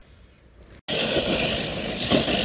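Faint background at first, then after a sudden cut about a second in, loud splashing and churning as a Traxxas TRX-4 RC crawler drives through a muddy puddle.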